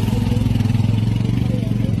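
An engine running steadily close by: a low, even hum that holds one pitch without rising or falling.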